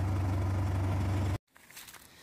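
Steady low engine and road drone heard inside a moving pickup truck's cab. It cuts off abruptly about one and a half seconds in, leaving only faint outdoor sound.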